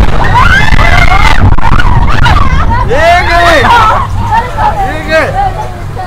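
Mine-train roller coaster rumbling along its track, with riders shouting and whooping over it.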